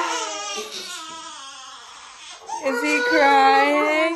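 Newborn baby crying: a wail that fades out within the first second, then a second, lower and louder wail beginning about two and a half seconds in.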